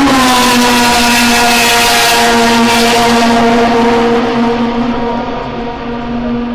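Racing car engine held at high revs, one steady high note with a harsh hiss over it, fading gradually near the end as the car draws away. The sound is distorted by a poor built-in camera microphone.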